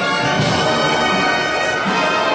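Brass band playing a slow funeral march: held brass chords of trombones and trumpets, with low drum strokes about half a second in and again near the end.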